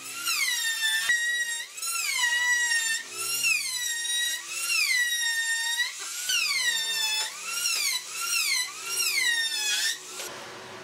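Makita trim router cutting a profile along the edge of a wooden strip. A high whine whose pitch swings up and back down about once a second, cutting off suddenly at the very end.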